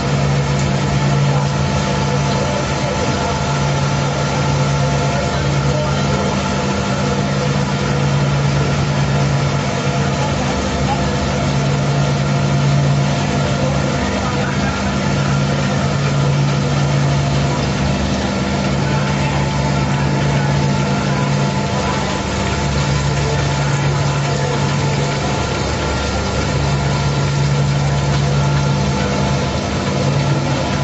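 Volute screw press sludge dewatering machine running: a steady low electric drive hum over mechanical noise, with a deeper low tone that swells and fades every few seconds.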